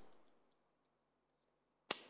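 Near silence: room tone after a man's voice trails off, with one short, sharp click near the end.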